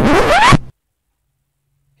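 Record-scratch sound effect: a half-second scratchy sweep rising in pitch that cuts the background music off dead.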